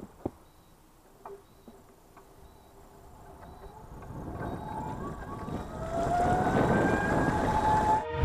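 Mobility scooter's electric drive motor whining as it speeds up, its pitch climbing steadily, with a growing rush of road noise from the tyres. Two sharp clicks at the start.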